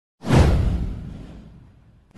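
A whoosh sound effect with a deep low rumble under it. It comes in sharply a fraction of a second in, then fades away over about a second and a half.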